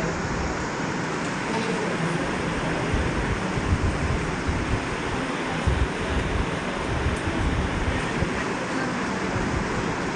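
Steady rushing noise with irregular low rumbles.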